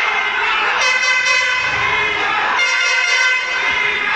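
Horns blown in a wrestling-arena crowd in long held blasts, several pitches sounding at once, with a new blast about a second in and another past the halfway mark; fans shouting underneath.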